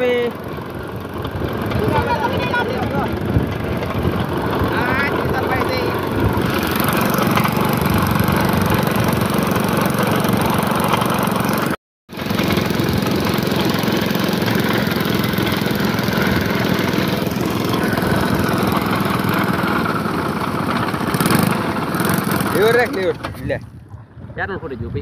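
A small air-cooled motorcycle engine on a homemade boat, running steadily and driving a propeller that churns the water. The sound cuts out for an instant a little before halfway.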